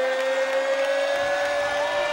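A man's voice holding one long drawn-out note while announcing the winner's name, rising slightly in pitch, over crowd noise.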